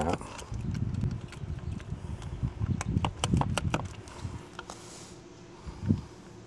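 Irregular clicks and taps of hands handling and unscrewing parts of a plastic Rain Bird sprinkler valve in its valve box, with low rustling handling noise, dying down over the last second or two.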